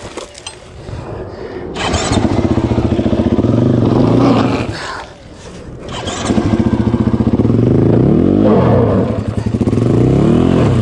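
2021 KTM 500 EXC-F's single-cylinder four-stroke engine revving under load on a steep dirt climb. It runs low at first, revs up about two seconds in, dips near the middle, then revs again, rising and falling in pitch near the end.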